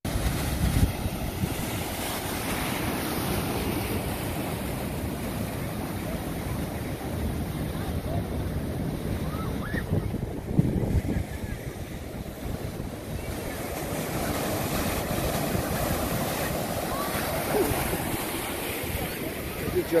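Ocean surf: waves breaking and foaming in steadily, with wind noise on the microphone.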